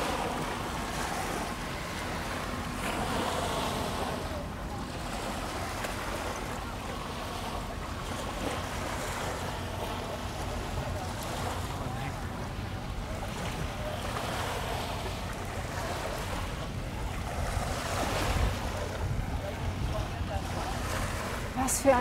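Small river waves washing onto a sandy beach, with wind buffeting the microphone: a steady wash of water and wind with slight swells.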